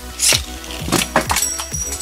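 Beyblade Burst top (Valtryek V2) launched from a Hasbro ripcord launcher: a quick rasping zip of the ripcord near the start, then a few sharp clinks and knocks about a second in. Background music with a steady beat runs underneath.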